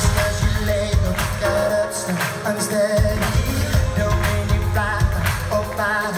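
Live Christian pop band playing loud with a male lead vocal over a steady drum beat and heavy bass, heard from among the audience.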